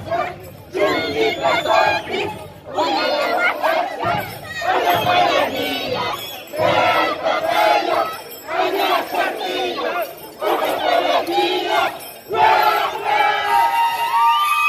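A group of dancers' voices shouting together in short, repeated calls, about one every second and a half with brief gaps between.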